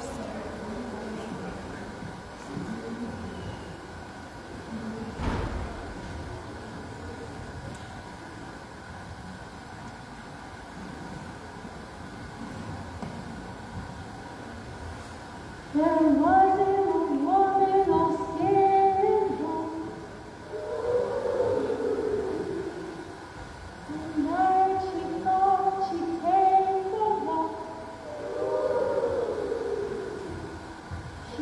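Low murmur of a crowd of children in a large hall, with one thump about five seconds in. About halfway through, a woman starts singing through a microphone, and a group of children sings answering phrases, call and response.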